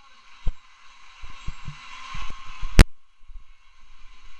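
Handling noise: scattered low knocks and rustling over a faint hiss, with one sharp click a little before three seconds in.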